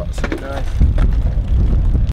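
Brief, indistinct voices about a quarter-second to half a second in, over a steady low rumble.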